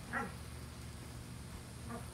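A dog barking twice: a sharp bark just after the start and a fainter one near the end.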